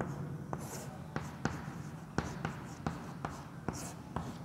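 Chalk writing on a chalkboard: a dozen or so short, irregular taps and scratches as letters are formed, with a brief high-pitched scrape of the chalk near the start and another near the end.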